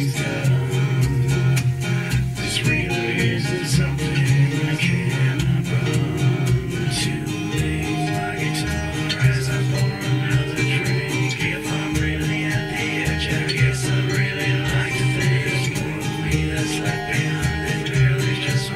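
A recorded song playing back: guitar-led music with a country feel.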